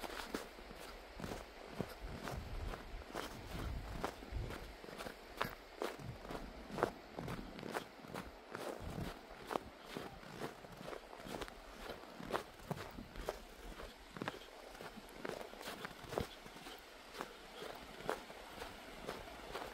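Footsteps crunching on packed snow at a steady walking pace, about one and a half to two steps a second.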